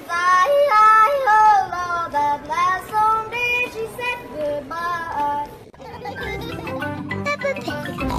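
A young boy yodeling, his voice flipping sharply between low and high notes. About six seconds in it gives way to instrumental music with a bass line.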